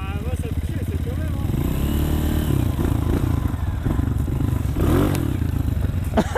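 Honda CRF125 dirt bike's single-cylinder four-stroke engine running at low revs as it creeps up to a log, the revs rising and falling a little about halfway through.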